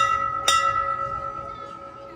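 Brass ship's bell struck by hand twice, about half a second apart, its ringing tone slowly dying away.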